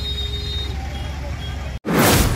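Idling engines of a bus and cars in a traffic jam, a steady low rumble with a high steady beep-like tone over it for the first half second or so. Just before the end the sound cuts off suddenly and a loud whoosh begins: the swoosh of a news logo animation.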